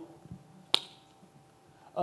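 A single sharp click about three-quarters of a second in, during a quiet pause, over a faint steady hum.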